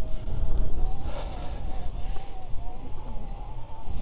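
Wind buffeting the microphone as a steady low rumble, with a faint thin whine that wavers slightly in pitch underneath.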